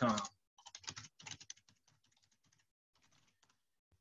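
Typing on a computer keyboard: faint, quick keystrokes in two short runs, the second shortly before the end.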